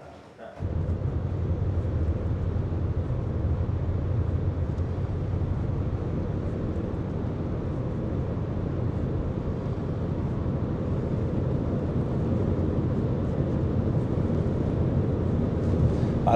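Steady drone of a moving car, engine and tyre noise, heard from inside the cabin, with a low hum underneath. It cuts in suddenly about half a second in.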